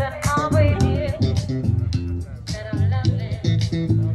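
Live band music: a sung melody over a strong, repeated electric bass line and a steady beat. The voice line is plainest in the first second.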